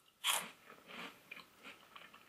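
Biting into a baked puffed-corn snack and chewing it: one crisp crunch about a quarter second in, then several fainter crunching chews.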